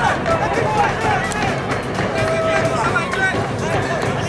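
Live football-ground sound: a mix of scattered shouting and calling voices from spectators and players, with no single loud event.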